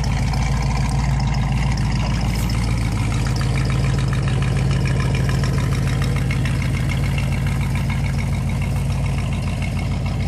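A 1962 Ford Country Sedan station wagon's engine idling steadily.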